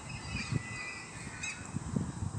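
Wind buffeting the microphone, with short, high-pitched bird calls about half a second in and again near one and a half seconds.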